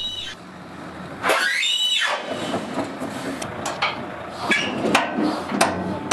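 A steel telescopic low-loader trailer being shortened by its truck: a squeal of about a second, then several sharp metallic knocks and clanks as the extension beams shift.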